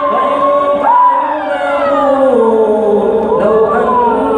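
A male imam chanting Quran recitation in prayer in long, melodic held notes with gliding pitch, in a reverberant hall. Other voices of worshippers cry out over the chant, overlapping with it.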